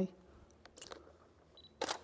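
A camera shutter fires once near the end, a sharp click against faint room tone, with a smaller click about a second earlier.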